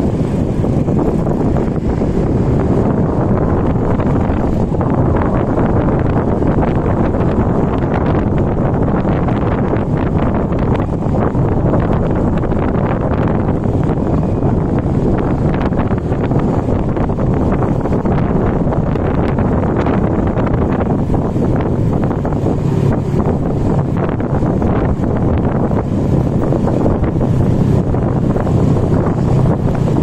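Wind buffeting the built-in microphone of a chest-mounted camera on a moving motor scooter: a steady, loud low rush with the scooter's small engine humming underneath.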